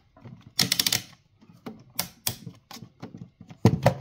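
A series of sharp clicks and taps: a quick rattle of several about half a second in, a few single clicks after it, and a louder pair near the end.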